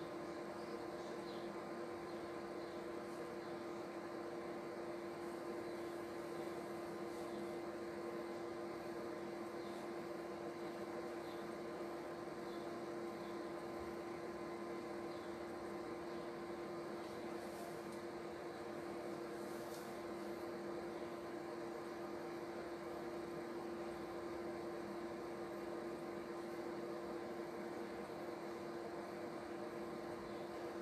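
A steady hum with one strong constant tone and a few fainter ones over an even hiss, unchanging throughout: the running background noise of an electrical appliance or fan in a small room.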